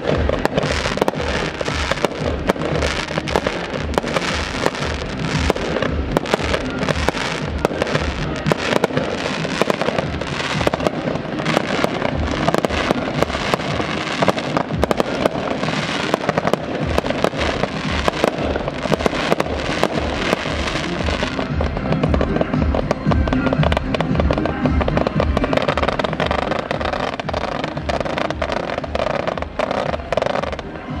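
Fireworks going off in quick succession, rapid bangs and crackling, over music with a steady bass beat.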